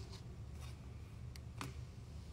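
Faint rustling and a few light clicks over a low steady hum.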